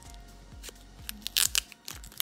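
A plastic card sleeve crinkling and tearing as it is handled, in a few sharp crackles about a second and a half in and again near the end.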